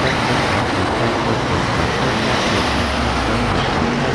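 Road traffic: a line of cars and SUVs driving past, a steady run of engine and tyre noise, with a deeper engine hum swelling about three seconds in.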